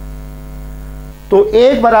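Steady electrical mains hum, a fixed low buzz with a stack of evenly spaced tones, carried in the recording; a man's voice cuts in with a word about a second and a half in.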